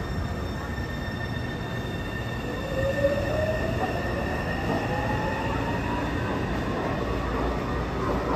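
A Taipei Metro C301 train pulling out of an underground station. Steady high tones sound over the rumble, and from about two seconds in a whine rises steadily in pitch as the train accelerates away. A brief knock comes about three seconds in.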